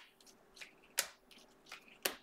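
Trading cards being flicked through by hand, one at a time: a sharp snap about a second in and a few fainter ticks.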